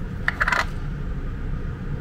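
A short run of light clinks, lasting about half a second, near the start, as a small tube of grease and its screw cap are handled. A steady low hum runs underneath.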